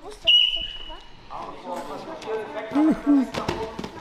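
A whistle blown once, a single steady blast of just under a second, the signal to start a wrestling bout, followed by voices in a sports hall and a few sharp knocks.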